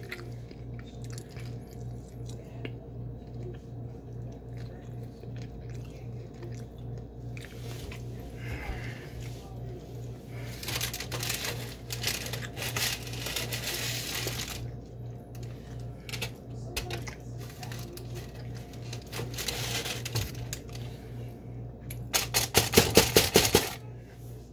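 Rustling and crinkling as food is handled over a paper towel, in spells, over a steady low pulsing hum. Near the end comes a louder run of rapid clicks.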